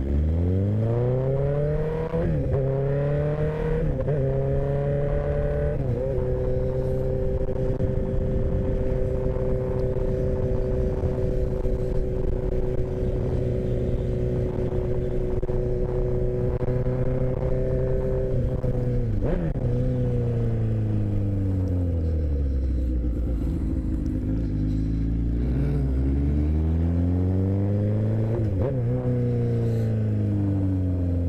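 Suzuki sport motorcycle engine accelerating hard, its pitch climbing through two upshifts in the first six seconds. It then holds a steady cruising pitch until about 19 seconds in, when it drops off as the bike slows, with two short rises in pitch near the end as it downshifts.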